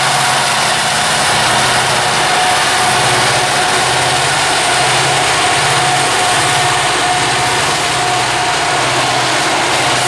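BNSF SD70ACe diesel-electric locomotives passing close by at the head of a coal train. Their EMD 710 two-stroke V16 engines give a steady, loud drone with a thin steady whine above it.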